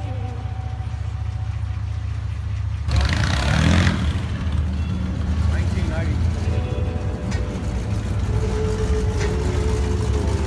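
Low, steady rumble of car engines as cars cruise past, with a sudden louder burst about three seconds in.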